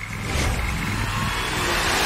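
Sound-effect build-up for an animated bank-vault door unlocking: a low rumble and rising noise that swell steadily louder.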